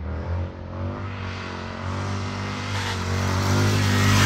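Motorcycle engine running steadily while the rider holds a wheelie, getting louder over the last couple of seconds as the bike comes toward the microphone.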